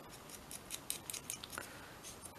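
Small ink dauber dabbing ink around the edges of a little paper word label held in the fingers: faint, quick scuffing dabs, about five a second.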